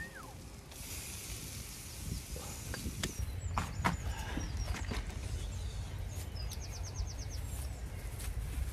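Open-air ambience over a steady low rumble: a falling whistle at the start, several short high bird chirps around the middle and a quick trill of about eight rapid notes near the end, with scattered crackles and clicks from dry straw underfoot and handling.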